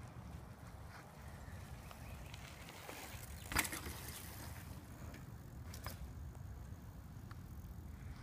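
Mountain bike ridden past on a dirt trail, its tyres crunching on the dirt in a short burst as it passes close about three and a half seconds in, over a steady low rumble.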